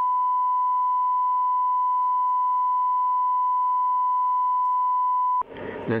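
Broadcast line-up test tone: a single steady, pure beep held unbroken at constant level, cutting off shortly before the end as a voice starts to speak.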